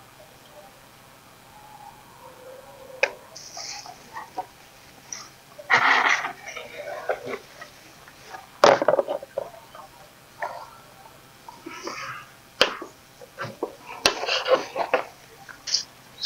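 Rustling of leafy seedlings being pulled apart and handled, with a few sharp clicks and knocks now and then from the plants and plastic net pots on the wooden table.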